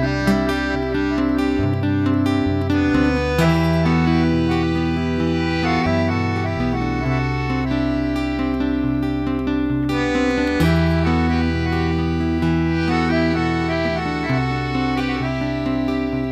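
Piano accordion playing a sustained melody over strummed acoustic guitar and bass, a live band's instrumental passage in a slow country ballad, with held chords changing every few seconds.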